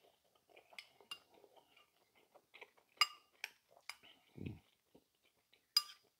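A spoon clinking and scraping against a bowl while stew is scooped and eaten: several light, separate clinks, the sharpest about three seconds in and just before the end.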